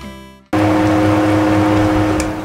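Background music fades out over the first half second. Then a loud, steady hum with a hiss cuts in abruptly and holds.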